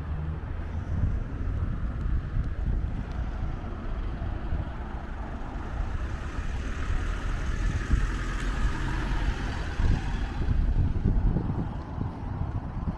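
A Mitsubishi pickup truck drives past, its tyre and engine noise swelling from about halfway through and fading near the end, over a steady low rumble of wind on the microphone.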